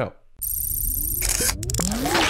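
Electronic title-sting sound effects starting about half a second in: a loud burst of hissing, glitchy digital noise with a few sharp clicks and several rising sweeps.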